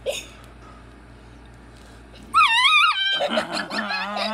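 A puppy gives a loud, high, wavering squealing cry a little past halfway through, then carries on with lower, rougher growling noises as it lunges and mouths at the person holding it.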